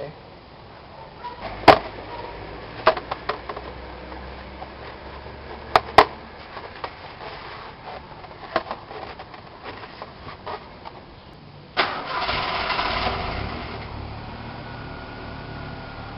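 Several sharp knocks and clicks, the loudest near the start. About twelve seconds in, a car engine is cranked and catches, then settles into a steady idle.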